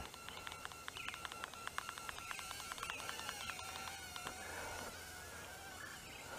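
Faint, wavering high-pitched buzz of a Cheerson CX-10D nano quadcopter's tiny motors flying overhead, with a fast train of light ticks over the first three or four seconds.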